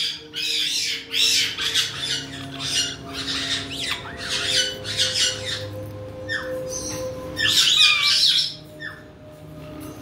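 Pet caiques squawking and chirping, a busy run of short, high-pitched calls that eases off near the end. A faint steady hum runs underneath.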